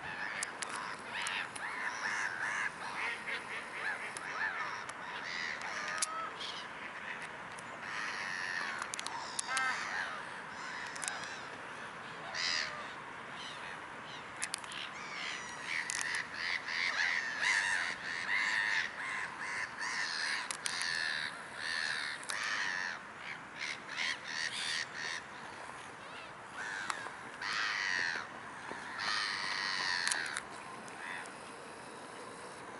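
Many birds calling over one another, with short calls, some bending in pitch, coming thickly and overlapping throughout.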